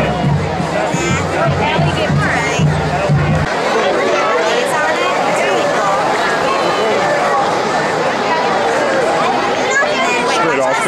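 Music with a heavy bass beat playing over crowd chatter; the music cuts off suddenly about three and a half seconds in, leaving the crowd's talk.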